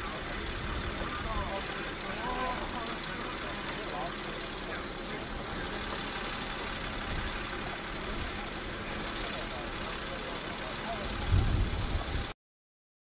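Steady, distant running of a heavy tracked rocket launcher's engine, heard outdoors, with faint voices too far off to make out. A brief low rumble rises near the end.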